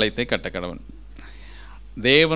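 A man speaking in Tamil for under a second, then a pause of about a second with only a faint soft hiss.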